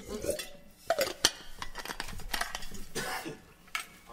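A drink container being handled for a drink: two sharp clinks about a second in, amid softer handling noises.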